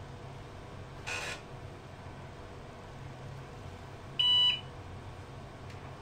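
One short electronic beep from the IBM PS/2 Model 30's built-in PC speaker about four seconds in, over a steady low hum. A brief soft scuff about a second in.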